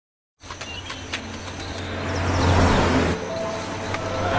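A car driving on a road. Its low rumble swells for about two seconds and then eases off. A few light clicks sound in the first second or two.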